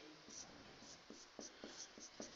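Faint strokes of a marker writing letters on a whiteboard: a series of short squeaks and taps, one per stroke.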